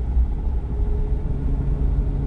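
A car driving, heard from inside the cabin: a steady low rumble of engine and road with a faint even hum, and no sudden events.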